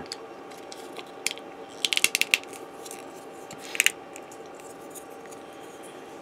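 Small hard plastic model-kit parts clicking as they are handled and pressed together by hand: a single click, then a quick run of clicks about two seconds in, and a pair near four seconds.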